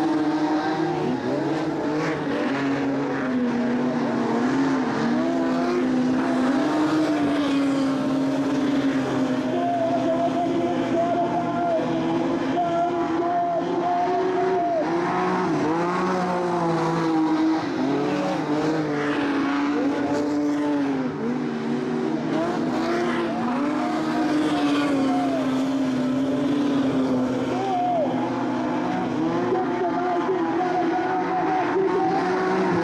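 Modified sedan race-car engines racing close together, revving hard and easing off through the corners, so the engine note keeps rising and falling.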